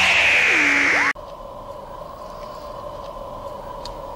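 A loud burst of hiss, with a tone that dips and rises again, cut off suddenly about a second in. It is followed by a steady faint electronic hum over a soft hiss.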